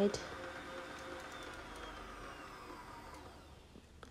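Electric stand mixer beating cake batter, its motor whine slowly falling in pitch and fading as the mixer winds down.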